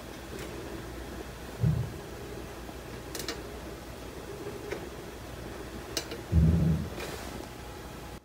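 Steady low hum broken by two loud, dull thumps, one about two seconds in and a longer one near the end, with two sharp clicks between them; the thumps sound like the noises the guard takes for someone on the stairs.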